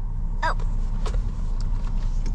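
Steady low rumble of a Ford Explorer's engine and road noise heard inside the cabin, with a few faint knocks.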